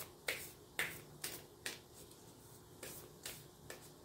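A tarot deck being shuffled by hand: seven short sharp snaps of cards striking together, irregularly spaced, with a pause of about a second midway.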